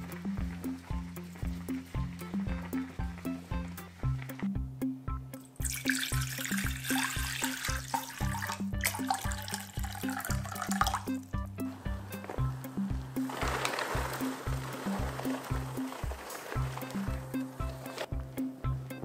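Background music with a steady beat. About six seconds in, water is poured into a steel saucepan for around five seconds, and a fainter splash of water follows a little later.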